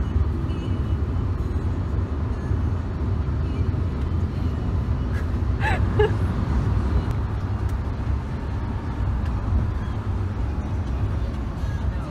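Steady low rumble of road and engine noise heard from inside a moving vehicle's cabin at highway speed, with a brief voice sound about halfway through.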